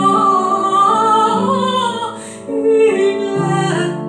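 Alto voice singing a slow Italian aria antica with piano accompaniment, the sung line gliding over held piano notes and dipping briefly about halfway through.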